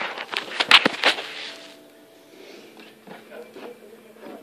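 Handling noise from a plastic storage bin being shuffled over carpet: a quick run of clicks, knocks and scrapes in the first second or so, then faint rustling.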